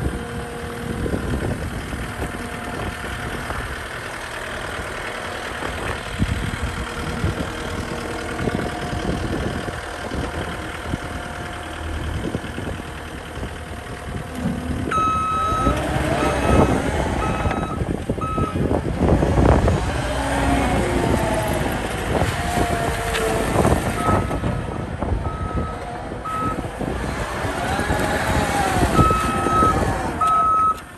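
Caterpillar 259D compact track loader's diesel engine running as the machine drives. From about halfway through, its backup alarm sounds in runs of repeated beeps, with a whine rising and falling in pitch as it maneuvers.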